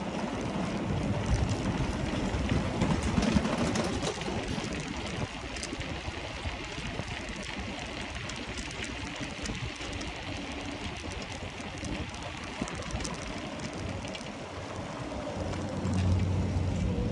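Wind buffeting the microphone of a moving bicycle, with the tyres rolling over brick paving and many small clicks and rattles from the bike. A low steady hum comes in near the end.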